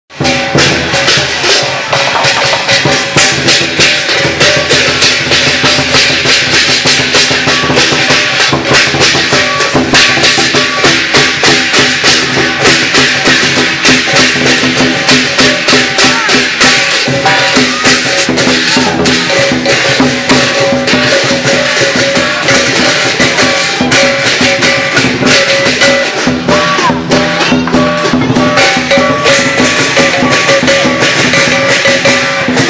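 Lion dance percussion: a big drum with crashing cymbals and gong, beaten in a fast, steady rhythm, with the ringing of the metal instruments held underneath.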